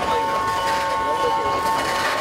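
Several people talking beside a stationary passenger train, over a steady high hum held on two close pitches.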